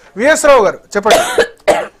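Speech: a person talking in three short, loud bursts, one of them breathy or rasping, like part of a cough.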